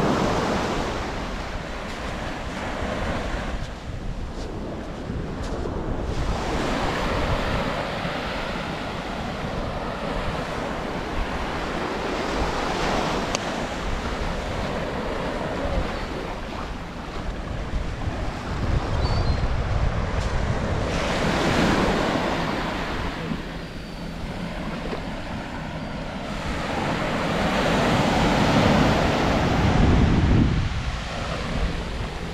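Small sea waves breaking and washing up a sandy beach, the surf swelling louder several times and ebbing between, with wind buffeting the microphone.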